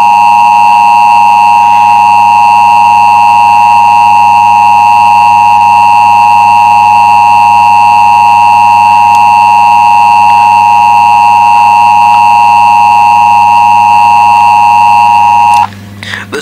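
Emergency Broadcast System attention signal: two steady tones near 853 and 960 Hz sounded together, loud and unbroken, cutting off just before the end.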